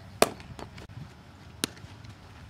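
Sharp smacks of a baseball during fielding practice: two strong cracks about a second and a half apart, the first the louder, with a faint knock between them.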